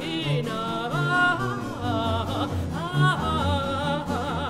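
Mezzo-soprano singing a baroque aria in operatic style with a wide vibrato on held notes, over a low bass line from a baroque continuo of harpsichord and violone.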